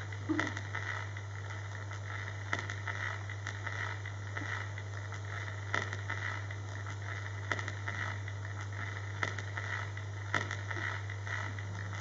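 A steady low hum with a hiss over it, and scattered soft clicks and rustles every second or two from performers moving on a stage floor.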